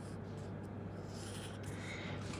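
Faint scratching and rustling of a paper sheet over a steady low hum.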